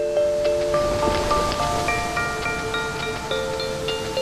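Instrumental ident jingle: a melody of struck, ringing notes over a soft backing.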